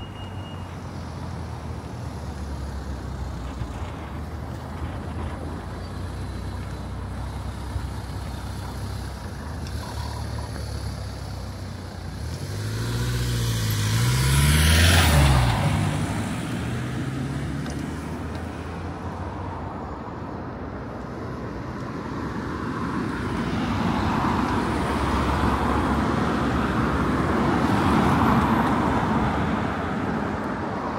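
Road traffic on a city street: engines running and vehicles driving past. A van passes close about halfway through, loudest then, with its engine note bending in pitch as it goes by. A second, broader swell of tyre and road noise builds near the end.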